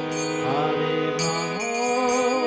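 Paul & Co hand-pumped harmonium playing sustained reed notes, with the chord shifting about one and a half seconds in. A voice sings along in wavering, gliding notes.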